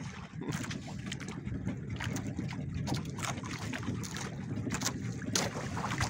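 Low, steady rumble of a small fishing boat at sea, with scattered light clicks and knocks from handline fishing gear being handled on board.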